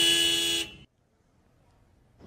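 A car horn sounding one steady note, which cuts off abruptly a little over half a second in.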